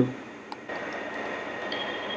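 Gas burner flame hissing steadily under a pan, starting abruptly about two-thirds of a second in, with a faint high whine underneath.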